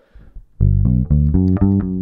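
Fingerstyle electric bass guitar, a Fender Precision Bass, playing a one-octave G major arpeggio in the second-finger position. It is a run of single plucked notes, about four a second, starting about half a second in.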